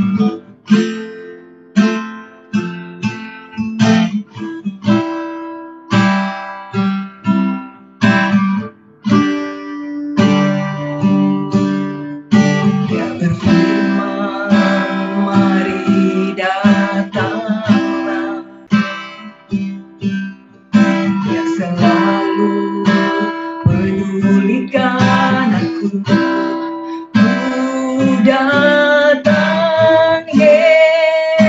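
Acoustic guitar strummed in chords, with a woman singing into a microphone. The first dozen seconds are mostly guitar chords; her singing is fuller and steadier from about halfway through.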